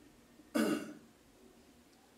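A man clearing his throat once, a short rasp about half a second in, otherwise quiet room.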